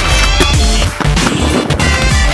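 Backing music with a steady beat, over the scraping grind of aggressive inline skates sliding down a metal handrail.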